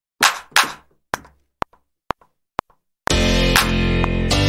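Single sampled clap hits tried out one at a time, the last few as short clicks about half a second apart. About three seconds in, a house track starts loud: a piano chord riff over deep bass with a steady beat.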